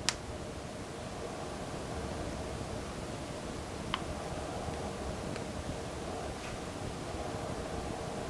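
Small plastic parts of a 1/6-scale helmet mount being worked apart by hand as a tiny insert is pried off: a sharp click right at the start and a fainter click about four seconds in, over steady low room noise.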